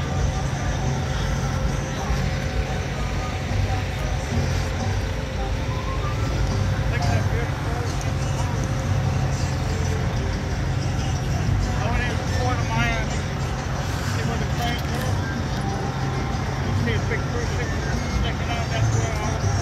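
A steady low rumble of outdoor noise, with faint voices now and then.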